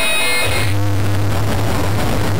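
Loud, steady static-like noise used as a radiation sound effect, with a low hum joining about half a second in; the last ringing tones of an elevator ding fade out at the start.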